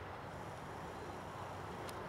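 Quiet, steady outdoor background noise, with one faint click near the end.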